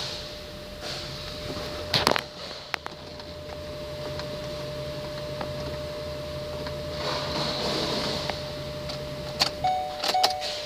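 A 2010 Ford Expedition's ignition switched on with the engine not running: a steady low hum for about six seconds that stops near the end, with sharp clicks from the key in the ignition about two seconds in and again near the end.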